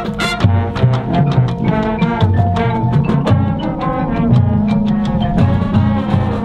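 High school marching band playing its field show: brass chords and low bass notes over drumline and front-ensemble mallet percussion, with frequent sharp strikes.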